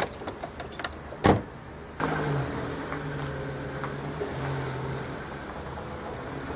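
Ford Focus hatchback: a few small clicks and rattles, then its door shut with one sharp thud about a second in, and from about two seconds in the engine running steadily at idle with a low drone.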